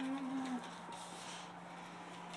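A person's short, low closed-mouth "mmm" lasting about half a second at the start, followed by a quiet room with a faint steady low hum underneath.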